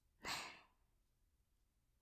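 A single short breath from a woman, starting about a quarter second in and over within half a second; the rest is near silence.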